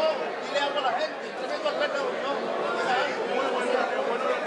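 Overlapping conversation of several people talking at once in a large hall, with no single voice standing out.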